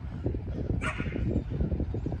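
A dog gives one short bark about a second in, over a steady low rumble.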